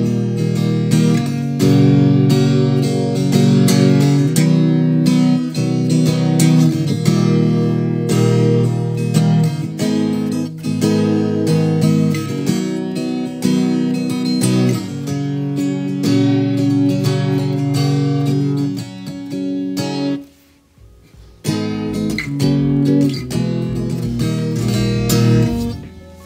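Acoustic-style guitar chords played on an Enya NEXG carbon-fibre smart guitar, with the chords changing steadily. The playing breaks off for about a second and a half around twenty seconds in, then resumes.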